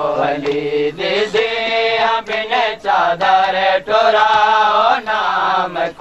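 Men's voices chanting a Punjabi noha, a Shia mourning lament, in long, wavering melodic phrases with brief breaks between them.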